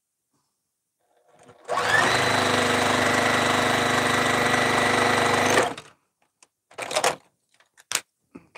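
Juki TL-2010Q straight-stitch sewing machine starting about a second and a half in, its whine rising briefly, then running at a steady high speed for about four seconds before stopping abruptly.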